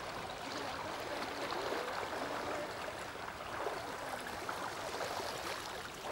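Several people wading through a shallow river, the water swishing and splashing steadily around their legs.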